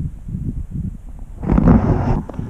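Wind buffeting the microphone as a low rumble, with a louder burst of handling noise about one and a half seconds in as the hand-held camera is swung around.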